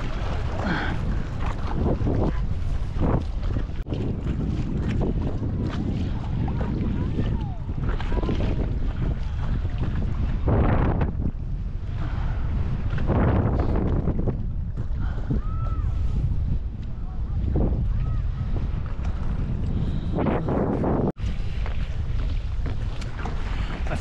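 Strong wind buffeting the microphone in a steady low rumble over choppy lake water, with water splashing at a paddleboard a few times.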